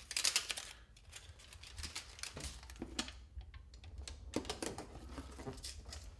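Aluminium foil tape crinkling and crackling as its backing is peeled off and it is pressed and smoothed by hand around a sheet-metal duct elbow. It makes a run of small ticks and crackles, densest in the first second and again about four and a half seconds in.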